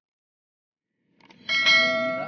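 Silence, then a bell-like chime struck about one and a half seconds in, ringing on with several steady tones.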